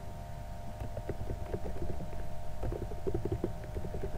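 Computer keyboard keys tapped in a quick, irregular run over a low steady hum.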